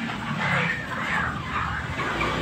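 Live broiler chickens calling, a few calls that rise and fall in pitch, over a background of voices and shed noise.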